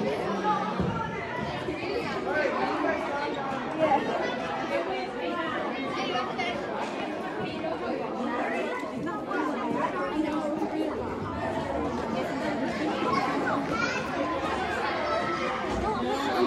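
Indistinct chatter of many people talking at once in a large room, a steady babble of overlapping voices.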